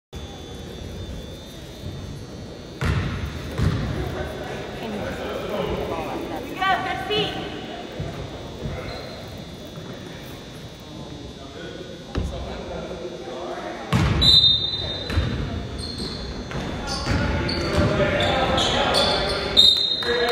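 Basketball bouncing on a hardwood gym floor during a youth game, each bounce a sharp thud that echoes around the large hall, over the chatter of players and spectators.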